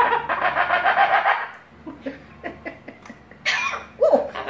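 Cockatoo calling: a loud, raspy, rapidly pulsing chatter for about a second and a half, a few soft clicks, then a short screech near the end.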